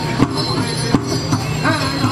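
Powwow drum group: several men singing in high voices over a steady, even beat struck on a large shared drum. The high singing grows stronger near the end.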